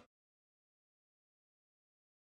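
Dead silence: the sound track drops out entirely.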